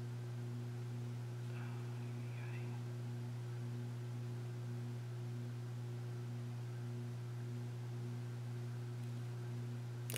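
A steady low electrical hum, one even tone with a couple of fainter overtones above it, unchanging throughout.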